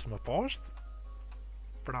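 A voice speaking briefly at the start and again near the end, with a steady low electrical hum through the pause between.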